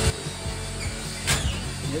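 A single sharp click, about a second in, from tool work on newly hung drywall, over a low steady background hum.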